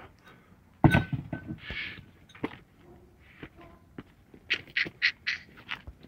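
Shoes and trash being handled on pavement: a sharp thunk about a second in, a short rustle, scattered clicks, then a quick run of short scuffs near the end.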